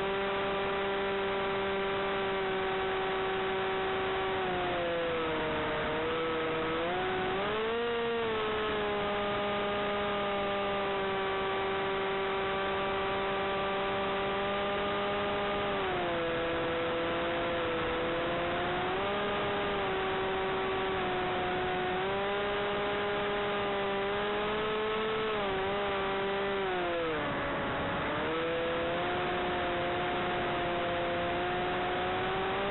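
Electric motor and propeller of an FPV flying wing running in flight: a steady whine whose pitch falls and climbs with the throttle, dropping about five seconds in, rising briefly around eight seconds, dropping again near sixteen seconds and dipping deepest near twenty-seven seconds before climbing back.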